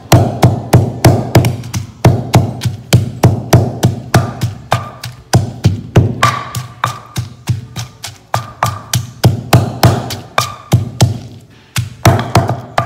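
Stone pestle pounding a coarse peanut-and-spice paste in a stone mortar: repeated dull thuds at about three a second, with a few brief pauses.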